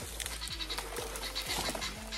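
Dry palm frond and its brittle leaflets rustling and crackling as they are handled and dragged, with many small irregular snaps.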